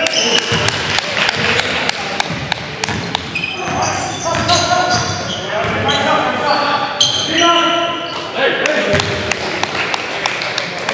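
Live indoor basketball game heard from the court: a ball bouncing on the hardwood floor with repeated sharp thuds, sneakers squeaking, and players' indistinct shouts. It all echoes in the large gym.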